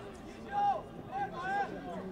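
Distant voices shouting across a football pitch during play: a few short, high calls over a faint open-air background.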